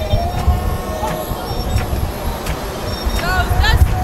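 Low, uneven outdoor rumble around idling cars, with faint voices and a few clicks; near the end, a short run of rising chirps.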